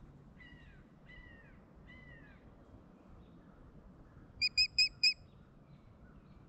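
Wild birds calling: three short falling whistles in the first two seconds, then a quick series of four loud, clear notes near the end.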